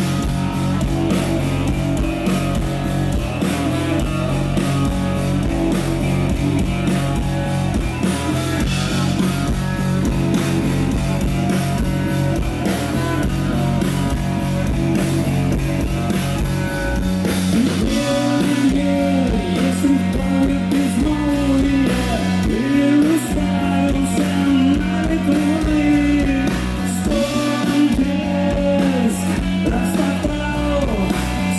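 Live rock band playing: electric guitars over bass and drums. About halfway through, the bass drops out in places and a gliding melodic line comes to the front.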